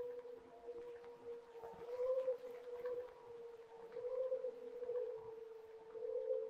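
A voice hummed into a handheld microphone and processed through a small effects pedal, making one steady drone that swells in loudness every second or two, with a fainter tone an octave above.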